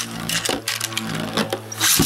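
A Beyblade spinning top whirring on the floor of a clear plastic stadium, a steady hum with light clicks and scrapes. Near the end a second Beyblade is launched into the stadium with a short loud burst of noise.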